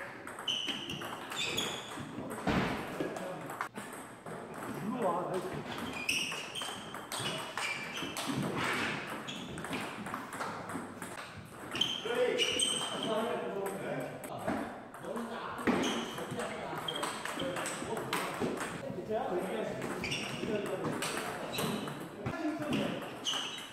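Table tennis rallies: the celluloid ball clicking sharply off the rubber rackets and bouncing on the table in quick series, with people's voices in the room.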